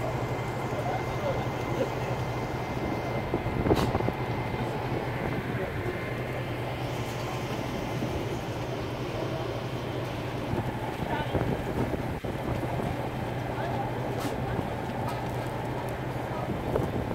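Steady low mechanical hum from the food truck, such as its generator, running without a break, with a few faint knocks and distant voices.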